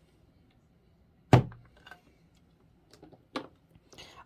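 A crinkle cutter blade pushed down through a cube of scented wax, meeting the cutting mat with one sharp thunk about a second in, followed by a few faint clicks as the wax pieces are handled.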